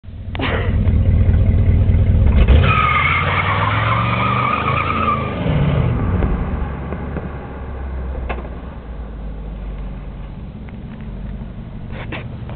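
1967 Cadillac Eldorado's 429 V8 revving hard as its front tyres spin in a burnout. A high, steady tyre squeal runs from about 2.5 to 5.5 seconds in, and then the engine sound fades as the car pulls away.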